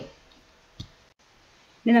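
A short pause in a woman's speech, with faint room tone and one soft click a little under a second in.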